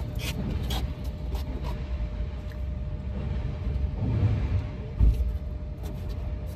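Steady low rumble heard from inside a parked car, with scattered light clicks and rustles and one heavy thump about five seconds in.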